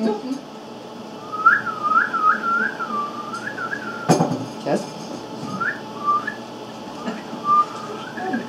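A woman whistling through her lips in imitation of birdsong: a quick string of short rising-and-falling notes for about two seconds, then a few shorter, halting phrases after pauses. A brief knock comes about midway.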